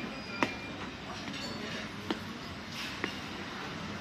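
Steady restaurant background noise, broken by three short sharp clicks about half a second, two seconds and three seconds in.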